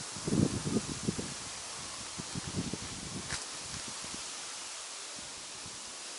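Outdoor wind ambience: gusts buffet the microphone in the first second or so and again around two seconds in, over a steady hiss. A single short high chirp sounds about three seconds in.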